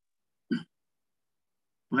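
One brief vocal blip from a person, a clipped hiccup-like sound about half a second in, between stretches of silence; a man's speech starts near the end.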